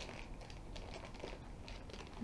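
Thin clear plastic bag crinkling faintly in short, scattered rustles as it is handled.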